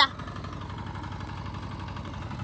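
Engine of a two-wheel walking tractor (power tiller) running steadily as it tills a paddy field, with a fast, even chug.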